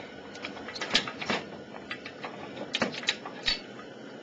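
Steel chain clinking and knocking in short, sharp clicks as it is hooked onto an engine tilter, with a couple of clinks about a second in and a quick cluster near three seconds.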